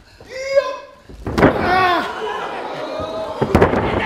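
A wrestler's body slamming onto the wrestling ring's canvas mat about a second and a half in, thrown from a clinch. The impact comes between shouts, with a loud yell right after it, and a few sharp knocks follow near the end.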